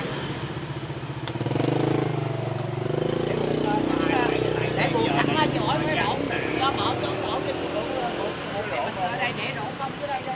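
Street traffic: motorbike engines running, one swelling past about a second and a half in, with quiet chatter of voices nearby.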